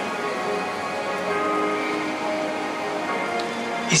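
Soft sustained keyboard chords, held notes that change a couple of times, over a faint hiss.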